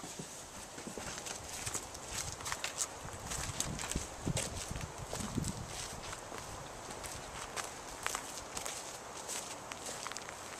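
Footsteps walking across a dry dirt and grass yard: an uneven run of steps and crunches a few times a second, with a few heavier low thuds near the middle.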